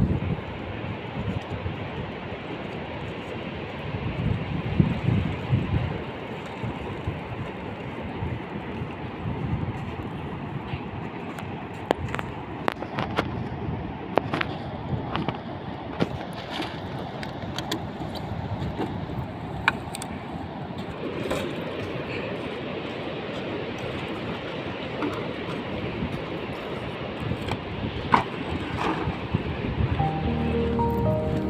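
Wind buffeting the microphone over a steady rush of sea. From the middle on come scattered sharp clicks and crinkles of plastic litter being gathered into a plastic bag.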